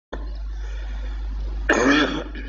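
A man's single short cough about two seconds in, over a steady low electrical hum from the microphone and sound system.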